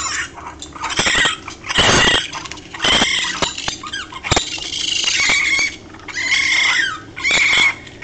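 Recorded distress calls of a very young raccoon pup: a string of loud, high-pitched cries with short breaks between them, one cry held longer near the middle.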